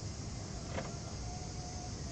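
Boat engine running steadily under way, a low rumble with hiss over it. A single click comes a little under a second in, and a brief faint whine follows in the second half.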